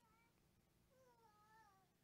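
Near silence, with a cat meowing faintly twice: one meow tailing off at the start and a longer, falling one about a second in.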